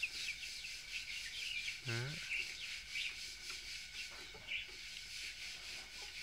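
Birds chirping faintly and often over a steady high hiss.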